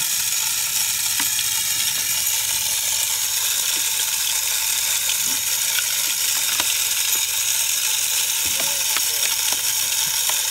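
Tripod deer feeder's spinner running continuously, flinging corn out in a steady hiss, with scattered ticks of kernels striking.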